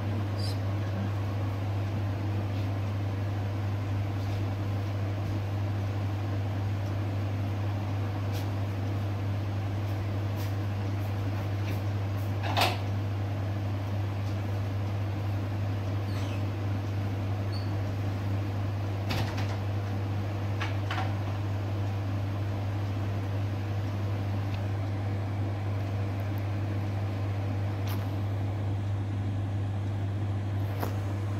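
Steady low hum with a few faint clicks, the clearest about twelve seconds in.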